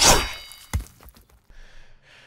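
Sound-effect chop of a heavy metal blade striking once with a brief metallic ring, the beheading stroke, followed under a second later by a dull thud.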